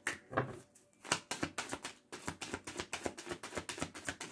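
A deck of cards shuffled by hand: a quick, uneven run of light card clicks and flicks, with a couple of brief pauses.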